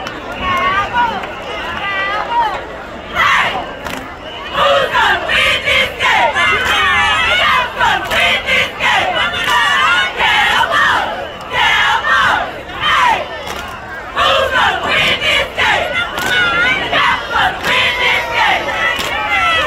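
A group of cheerleaders shouting a cheer together, many voices at once in rhythmic calls. It is quieter at first and gets loud from about three seconds in, with a brief lull near the end.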